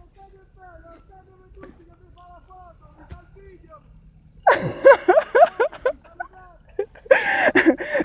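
A man's voice shouting loudly across the vineyard, calling out to the other workers, about halfway in. Faint distant voices come before it, and another loud voice follows near the end.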